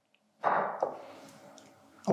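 A glass bottle set down on a stone countertop: a single knock about half a second in, fading out over a second or so.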